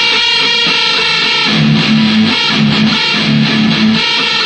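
Electric guitar played through an amplifier, playing the opening part of a song: a riff that settles into a low note repeated in short phrases about halfway through.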